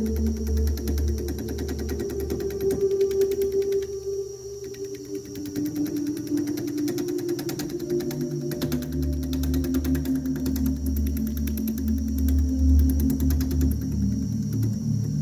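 Slow ambient music of long held tones that shift in pitch, over a Record Power wood lathe running with a fast, even whir from the spinning workpiece.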